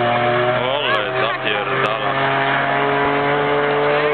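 Car engine running with a steady hum whose pitch creeps slightly upward toward the end. A person speaks briefly over it about a second in.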